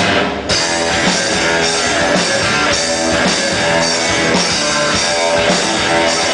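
Live rock band playing an instrumental passage on electric guitars, bass guitar and drum kit, with a steady beat. The sound drops out briefly right at the start before the full band comes back in.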